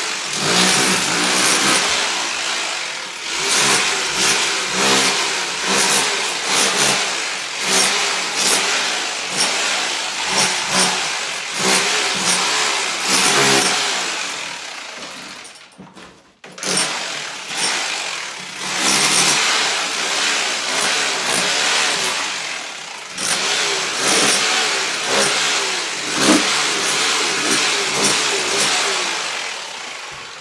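Corded electric power tool chipping old plaster off a brick wall. It runs in short surges, stops for about a second a little past halfway, then starts again.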